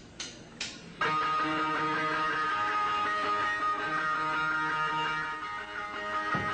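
A couple of short clicks, then about a second in an electric guitar starts playing, its notes ringing on steadily.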